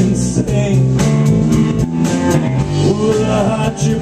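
Live blues band playing: electric guitars and bass guitar over a drum kit keeping a steady beat.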